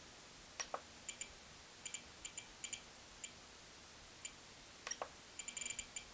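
Spektrum DX8 radio transmitter giving faint, short beeps as its scroll roller is turned and pressed through menu settings: scattered single beeps, a quick run of several near the end, and a few sharper mechanical clicks about half a second in and again about five seconds in.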